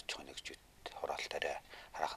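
A man speaking Mongolian, with short pauses between phrases.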